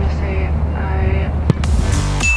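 A single sharp thud of a football about one and a half seconds in, over steady background music.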